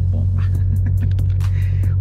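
Ford Shelby GT500's supercharged 5.2-litre V8 idling steadily, a low even rumble heard from inside the cabin.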